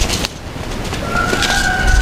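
A distant rooster crowing: one long, nearly level held call that starts about a second in, over a steady outdoor hiss. A few faint paper rustles from the seed packets come at the start.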